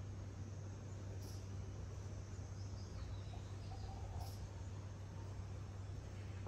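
Quiet ambience: a steady low hum under a faint hiss, with brief faint high chirps about every three seconds.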